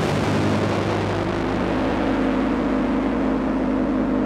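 Yamaha V50 FM synthesizer playing a held sound-effect-like patch: a steady rushing noise over several sustained low notes.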